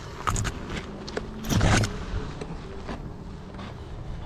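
One-wheel electric skateboard climbing a steep dirt slope at a crawl, its hub motor pulling near full current: the tyre scuffs and crunches over loose dirt with a few sharp knocks, the loudest a short rough scrape about a second and a half in.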